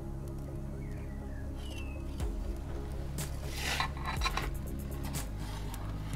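Metal pizza peel scraping across the oven's stone floor as it slides under the pizza to lift it out: a rasping scrape about three seconds in, lasting about a second and a half, over quiet background music.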